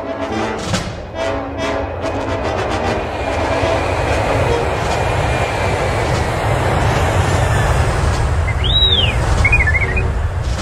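Film-score music for the first couple of seconds gives way to a steady, rumbling starfighter engine sound effect that grows louder. Near the end an astromech droid gives one rising-and-falling whistle, then a few short warbling beeps.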